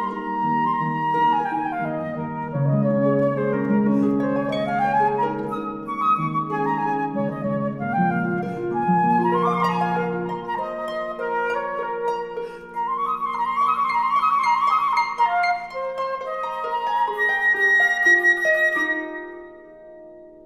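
Flute and concert harp playing an instrumental passage of classical chamber music: quick runs rising and falling over low sustained harp notes in the first half, then higher flute lines over the harp. The music dies away just before the end.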